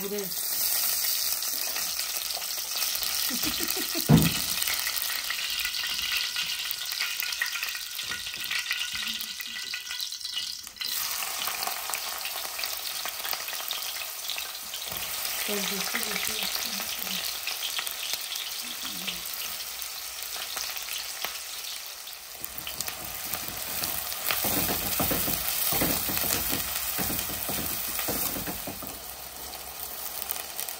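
Cumin seeds and then diced onion sizzling steadily in hot oil in a metal pot, with one sharp knock about four seconds in.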